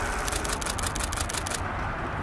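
Camera shutter firing in a rapid burst of sharp clicks, about ten a second, stopping about a second and a half in, over a steady low background hum.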